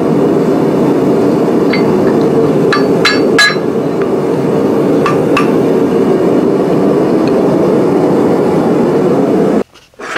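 A gas forge's burner running with a steady, loud rushing sound. Over it, a handful of light ringing metal-on-metal strikes on the anvil come in two small clusters, about 3 and 5 seconds in. The sound stops abruptly shortly before the end.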